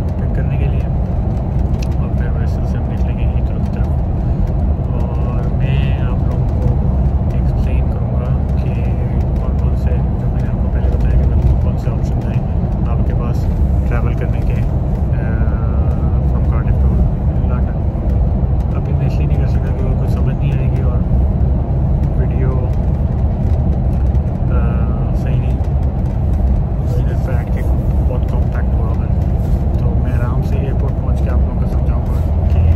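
Steady low drone of a Megabus coach's engine and tyres at motorway speed, heard from inside the passenger cabin.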